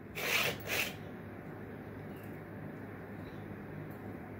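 Two short scrapes in quick succession, about half a second apart, as a metal sand-casting flask half packed with casting clay is slid and turned on a metal baking tray.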